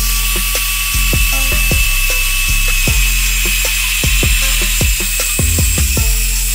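Handheld electric circular saw ripping lengthwise through a wooden plank: a steady high-pitched whine with dense cutting noise throughout. Background music with a steady beat plays underneath.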